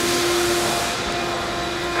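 Steady rushing noise with a faint steady hum underneath.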